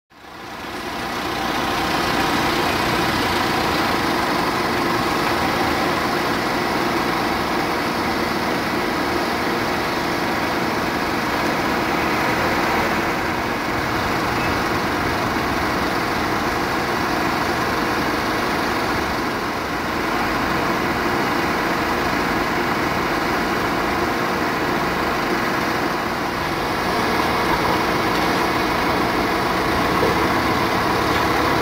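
A steady engine idling, fading in over the first couple of seconds, then running on evenly with a constant hum.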